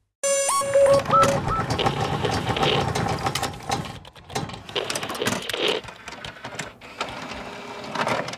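Sound-effect track of an animated logo sequence: a quick run of electronic beeps stepping up in pitch, followed by a dense mechanical clattering full of rapid clicks.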